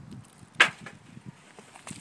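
A single sharp clank on a perforated sheet-metal panel about half a second in, followed by a few faint small ticks.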